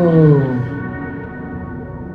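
A long, low, pained cry that swells and then sinks in pitch, dying away about half a second in. A sustained droning music score runs beneath it.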